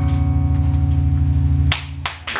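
Electric bass guitar, amplified through a Hartke cabinet, holding one low sustained note, the last of the piece. The note cuts off sharply with a click near the end.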